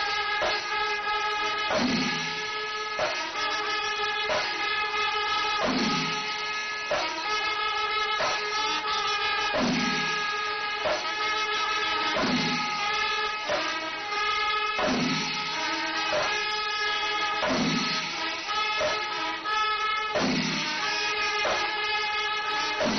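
Kerala pandi melam temple ensemble: chenda drums and elathalam cymbals strike a slow, steady beat, roughly one heavy stroke a second, under continuous blasts of kombu horns.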